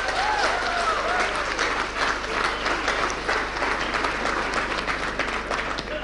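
Audience applauding, a dense steady patter of many hands clapping, with a few voices calling out over it in the first second or so.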